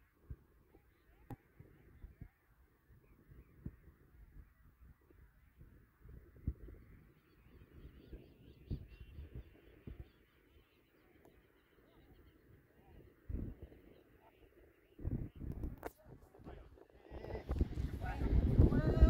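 Faint distant shouts of players on a football pitch over low, irregular rumbling on the microphone, growing louder near the end.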